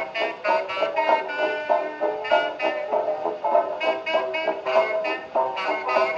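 Instrumental passage of a 1920s dance-band record played from a 78 rpm disc, the band playing in a steady beat. The sound is narrow and thin, with almost no deep bass or high treble.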